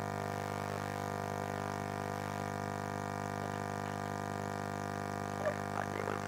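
Steady electrical hum from the sound system's audio line: a buzz with many evenly spaced overtones, unchanging throughout.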